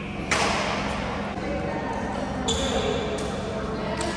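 Badminton doubles play in a reverberant sports hall: a sharp racket hit about a third of a second in, then footwork thuds and a high shoe squeak on the wooden court floor, with people talking in the background.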